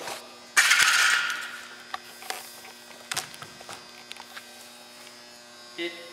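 A sudden scraping noise about half a second in, fading over about a second, then a few faint clicks, all over a steady mains hum.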